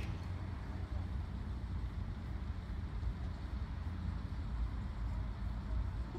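Steady low rumble of outdoor ambient noise with no distinct events: the background noise that is being measured, at about 52 dB, before a stationary exhaust noise test.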